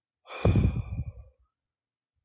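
A man's sigh: one loud exhale lasting about a second, starting a quarter second in.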